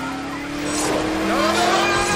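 Film sound effects of a car skidding with its tyres squealing while the passengers scream, over a steady tone that slowly rises in pitch.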